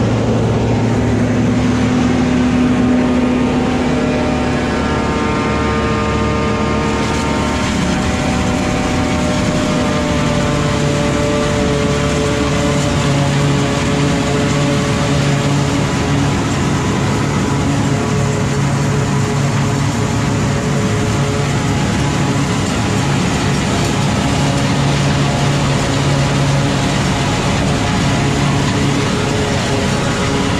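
A John Deere 5830 self-propelled forage harvester and a silage truck running side by side while chopping corn: a loud, steady engine drone with machinery noise, its pitch shifting slightly in the first ten seconds.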